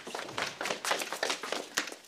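Hurried footsteps of several people on a hard floor: a quick, irregular run of taps and light knocks.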